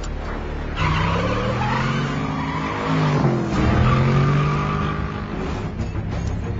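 Vehicle engines revving up and down in a chase sequence, with tires skidding.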